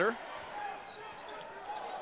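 A basketball being dribbled on a hardwood court, with a low arena crowd murmur under it.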